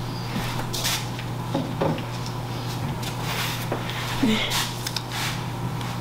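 A clear plastic slab soap mold being picked up off a counter and handled, giving a few light knocks and rubbing sounds over a steady low hum.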